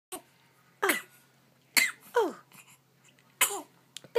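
A young baby coughing, about five short, high-pitched coughs, each falling in pitch.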